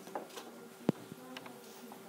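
Quiet room with a faint steady hum and a few light clicks and taps. One sharp tap about a second in stands out above the rest.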